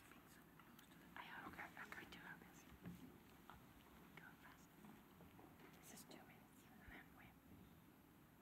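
Near silence: room tone with faint whispering, most noticeable about a second or two in.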